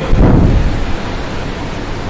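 Steady, fairly loud hiss with no speech in it, and a low rumble in the first half second.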